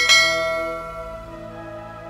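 A bell-like chime struck once at the start, ringing out and fading over about a second, over soft background music.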